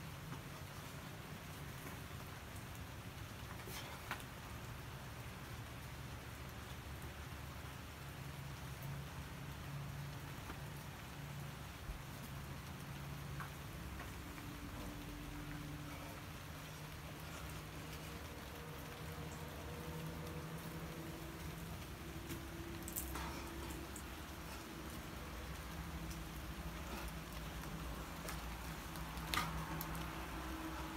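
Steady rain falling, an even hiss, with a few sharp clicks over it, the loudest near the end.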